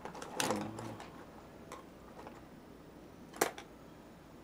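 A brief murmur of a voice, then a few light clicks and one sharp click near the end: wooden paintbrush handles knocking together as a tiny brush is picked out.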